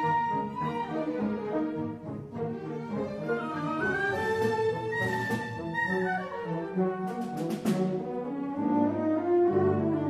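A chamber orchestra of strings and saxophones plays a concert piece for alto saxophone and orchestra. It holds sustained chords under a melodic line that climbs about four seconds in, and a run of quick high strokes comes through near the middle.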